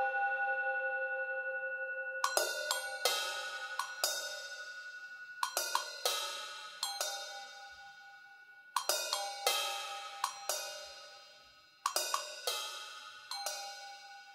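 A cymbal struck with soft mallets in repeating groups of three or four quick strokes, a group about every three seconds, each stroke left to ring and fade. Before the first group, a singing bowl's steady ringing tone dies away.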